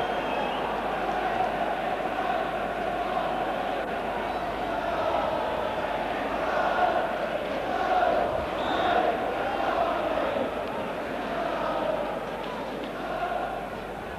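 Large football stadium crowd chanting and singing, the sound rising and falling in waves and loudest about seven to nine seconds in.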